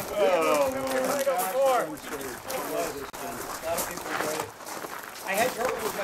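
Indistinct conversation of several people talking, strongest in the first couple of seconds.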